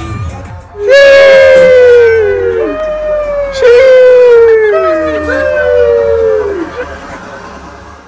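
A run of loud, long howls, each falling in pitch and overlapping the next, about five or six in all, fading out near the end.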